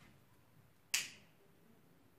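A handheld lighter struck once: a single sharp click about a second in as it lights.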